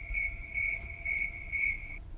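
Cricket chirping: a steady high trill that swells about twice a second and cuts off suddenly at the end.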